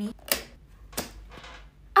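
Metal rings of a ring binder clicking as the binder and its pages are handled, with two sharp clicks, about a third of a second in and about a second in.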